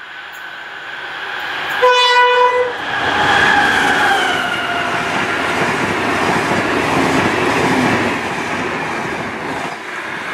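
A diesel locomotive-hauled passenger train sounds its horn once, a single short note about two seconds in, as it runs into the station at speed. It then passes close by in a loud rush of engine and wheel-on-rail noise, with a tone that drops in pitch as the locomotive goes past, and the coaches keep rolling by to the end.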